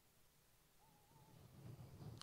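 Near silence: room tone, with a faint, brief wavering tone about a second in and faint low noise near the end.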